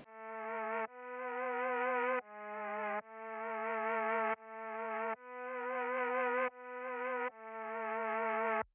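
Synth pad with vibrato playing a chord progression on its own. Each chord swells in slowly and changes about every second, and its notes waver in pitch.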